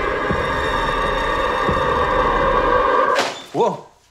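Dense, sustained tense film score with a couple of low heartbeat-like thuds, cut off suddenly a little after three seconds in. A short startled vocal cry follows half a second later.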